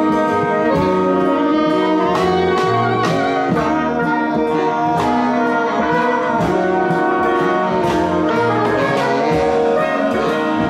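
Street horn ensemble of saxophones, including alto and baritone, with trumpet, playing a tune together in harmony, loud and steady.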